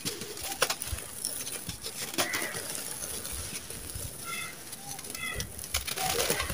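A dry, gritty sand-cement lump crunching and crumbling in bare hands, with scattered sharp crackles and a hiss of falling grains. Two short, high chirps sound in the second half.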